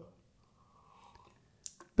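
Near silence, with two brief faint clicks near the end.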